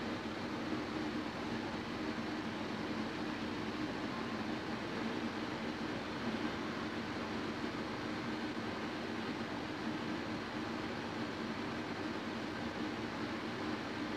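Steady low hiss with a faint steady hum and no distinct events: background room tone.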